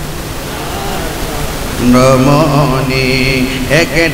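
A man's voice chanting a lament in a wavering, sung tune, holding long notes. It comes in about two seconds in, after a stretch of steady hiss.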